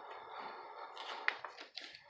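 A soft rustle, then a few light taps and clicks from about a second in, as of a hardback picture book being handled between lines of a read-aloud.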